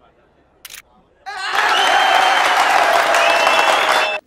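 A crowd of men clapping and cheering, starting abruptly about a second in and cutting off suddenly at the end; a single short click comes just before.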